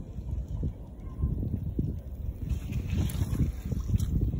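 Wind buffeting the microphone, an uneven low rumble that comes and goes in gusts.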